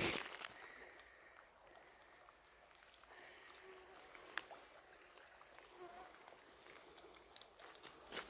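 Faint outdoor ambience beside a shallow river: a low, even hiss with a few faint short chirps and one light click about halfway through.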